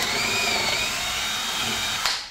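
Handheld power drill boring a wide countersink hole into a wooden board with a twist bit, following a pilot hole. Steady motor whine over the bit cutting the wood; the whine drops in pitch as the bit bites in near the start, then holds level.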